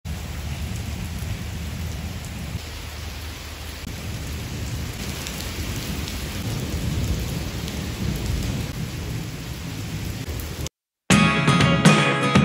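Heavy rain pouring onto wet brick paving, a steady hiss with a low rumble underneath. It cuts off near the end and is followed by guitar music.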